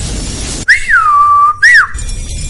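A whistle, loud and clear: one note that swoops up, drops and holds for most of a second, then a short second up-and-down note. Just before it there is about half a second of low rushing noise.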